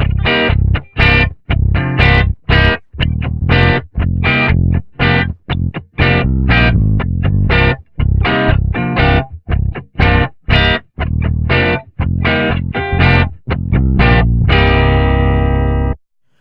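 Playback of a distorted electric guitar and an electric bass playing short, choppy stabbed notes together, time-stretched with Flex Time so that they sit on an eighth-note grid and sound mostly in time. About a second and a half before it stops, the part ends on one long ringing chord, then it cuts off suddenly.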